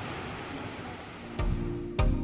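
Steady rush of a mountain stream's flowing water. About one and a half seconds in, background music with a thudding beat comes in over it and is louder.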